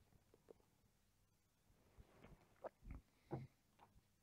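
A man drinking beer from a pint glass: mostly near silence, with three faint short sipping and swallowing sounds close together a little under three seconds in.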